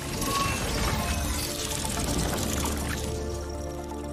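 Film score music under a flowing, liquid sound effect for blood and tiny machines moving through it.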